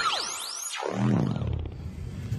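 Electronic logo sting: swooshing pitch glides rising and falling, then a falling sweep into a low rumble that ends about three-quarters of the way through, leaving faint room tone.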